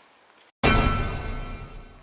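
A short musical sting laid in at an edit: after half a second of faint room tone, the sound cuts out briefly, then a sudden loud musical hit with a deep bass lands and fades away over about a second and a half.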